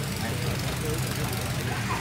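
A steady low mechanical hum, engine-like, over a faint even background noise.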